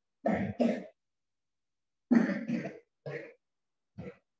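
A person coughing and clearing the throat: two quick coughs, a pause of about a second, then three more in close succession. A last short one comes right at the end, with silence between the groups.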